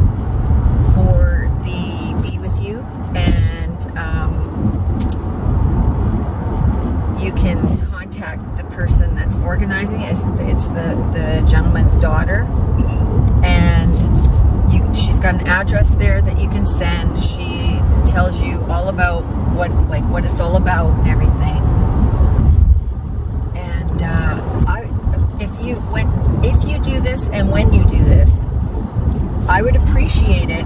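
Steady low rumble of road and engine noise inside the cabin of a moving car, under a woman's talking.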